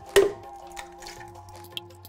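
A single hard plastic knock just after the start as the empty blender jar is set onto its base, over background music with sustained notes and light ticks.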